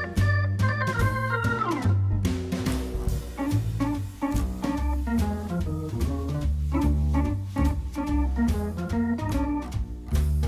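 Instrumental background music: an organ-like keyboard melody over a steady bass line and a regular beat.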